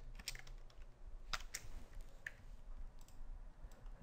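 Faint keystrokes on a computer keyboard: a few scattered, irregular key taps as a line of code is typed.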